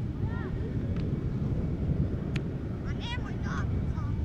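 Wind buffeting the microphone with a steady low rumble, while young footballers' shouts carry across the pitch just after the start and again near the end. Two short, sharp knocks come about one and two and a half seconds in.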